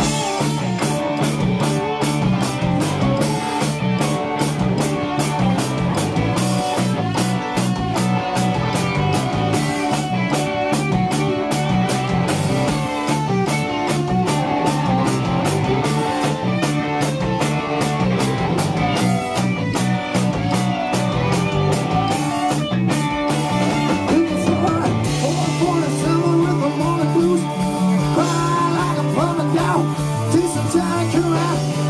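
Live rock band playing electric guitars, bass and drums, heard from within a pub crowd. The drums keep a steady, evenly spaced beat; about 25 seconds in they drop back and a held low note carries on under the guitars.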